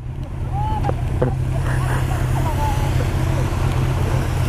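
Motorcycle engines idling steadily side by side, including the Yamaha R1's inline-four, as a low even rumble, with rain and wind noise over it.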